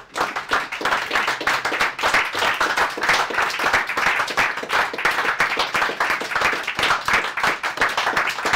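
An audience clapping: dense, steady applause of many overlapping hand claps that starts right away.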